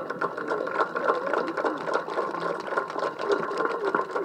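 Small electric motors and plastic gears of LEGO robots whirring, with a fast run of fine clicks and a steady whine, over faint background voices.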